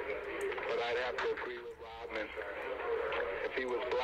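Speech: a voice talking, with no other sound standing out.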